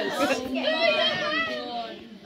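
Several teenage girls' voices talking and exclaiming over one another, fading near the end.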